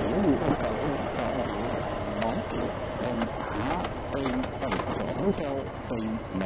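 Muffled talking from the rider over the steady running of a Honda ST1300 Pan European motorcycle and wind noise at road speed.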